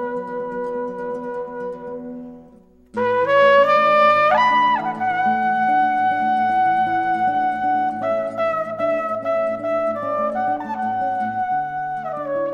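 Flugelhorn playing a slow, lyrical melody over a lower accompaniment: a long held note fades almost to silence about three seconds in, then a new phrase enters and climbs in a step a second later before settling into long held notes.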